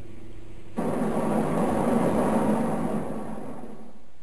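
Sci-fi sound effect of a spacecraft shuttle's thrusters firing as it moves forward: a rushing, hissing noise that cuts in about three-quarters of a second in, swells, then fades out near the end, over a low steady hum.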